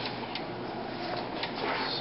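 A large cut sheet of printed banner media rustling as it is lifted and handled, with a few light clicks.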